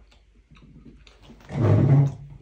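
A few faint clicks, then about a second and a half in a short, loud, throaty groan from a man, lasting about half a second.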